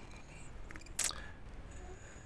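Low steady hum with one short, sharp click about a second in, a few faint ticks just before it.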